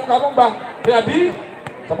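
A voice calling out a drawn-out, repeated 'nah', with a couple of short sharp knocks in between.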